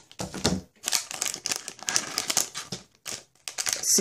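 Shiny plastic blind bag crinkling as it is squeezed and turned over in the hands, an irregular run of sharp crackles with a brief pause near the end.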